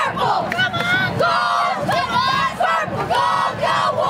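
High school cheerleaders yelling a cheer through megaphones, many voices shouting together over crowd noise.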